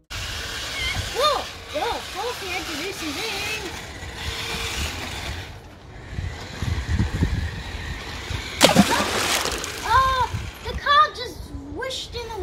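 A child's voice making short wordless calls and hums over a fluctuating outdoor rumble of wind on the microphone, with a loud rushing noise about nine seconds in.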